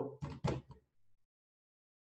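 A few short knocks in the first half second or so.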